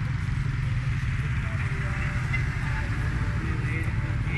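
Motorcycle engine running at low revs as the bike creeps along in slow traffic: a steady low rumble.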